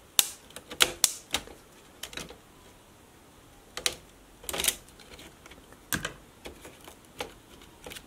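Irregular clicks and taps of plastic on plastic and circuit board as a plastic pry tool and fingers work a small daughter board loose from a netbook's plastic chassis, some in quick little clusters.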